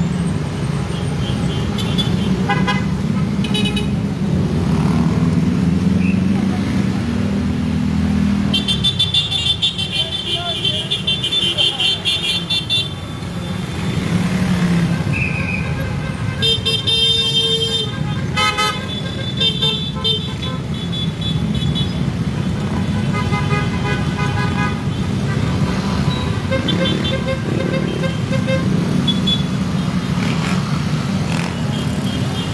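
Motorcade of cars and other vehicles running in traffic with a steady engine and road rumble, and car horns tooting again and again, several at once in places.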